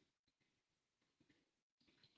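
Near silence: room tone, with a few very faint clicks.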